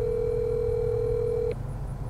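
Telephone ringback tone from a phone during an outgoing call: one steady ring tone that cuts off sharply about three-quarters of the way in.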